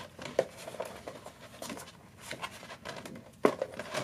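Hands handling a plastic cutting mat with a paper cutout stuck to it: light rubbing and crinkling, with one sharp knock about three and a half seconds in.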